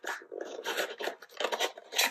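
Cardboard packaging rubbing and scraping as a small device is slid out of its box by hand: a run of irregular scrapes, a few louder ones in the middle and near the end.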